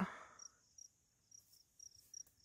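Faint field crickets chirping, short high chirps repeating a couple of times a second over otherwise quiet open ground.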